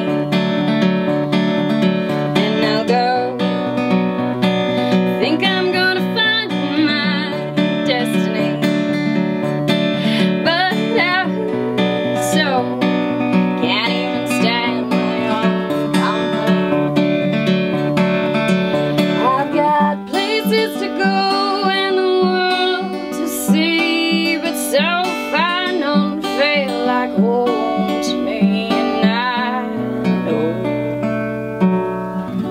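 Acoustic guitar strummed in a steady rhythm while a woman sings over it in long, wavering notes with vibrato. The guitar pattern changes about two-thirds of the way through.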